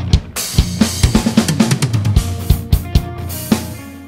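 BFD3 virtual acoustic drum kit playing a rock groove of kick, snare and cymbals, with no tom damping applied. Toms ring out with long decay and low-end resonance, heard as sustained ringing tones in the second half.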